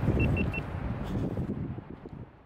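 Low rumbling vehicle noise that fades toward the end, with three quick high beeps near the start.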